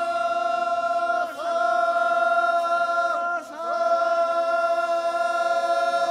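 A group of voices chanting long, drawn-out calls in unison: held notes that each swoop up into pitch, with short breaks a little over a second in and again past three seconds.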